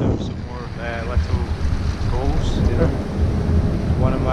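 Wind buffeting an action-camera microphone on a moving chairlift, a steady low rumble throughout, with snatches of indistinct talking over it.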